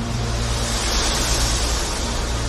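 Intro sound effect: a loud rushing whoosh over a steady low drone, growing brighter toward the middle.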